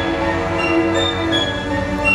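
Live symphony orchestra holding sustained chords, several notes sounding together, with upper notes changing while the low ones are held.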